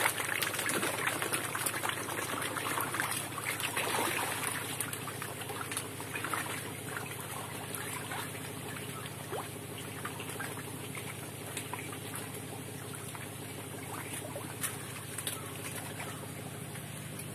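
Water splashing and trickling at the surface of a netted fish tank as fish stir the water, with many small splashes, busiest in the first few seconds and then settling. A steady low hum runs underneath.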